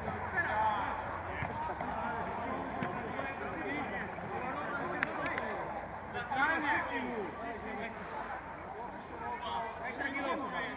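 Voices of football players and spectators calling out across an open-air pitch, with a louder shout about six to seven seconds in. A short sharp knock sounds about five seconds in.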